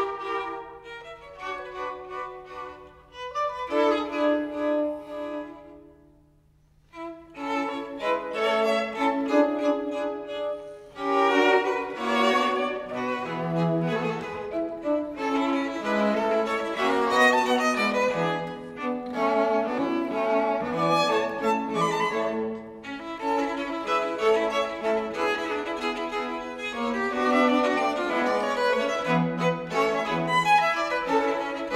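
String quartet of two violins, viola and cello playing a classical-era Allegretto movement in B-flat major. The playing drops to a brief near-silent pause about six seconds in, then resumes and fills out from about eleven seconds on.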